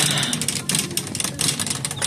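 Plastic shopping cart rattling with a rapid, irregular clicking as it is pushed along a hard store floor.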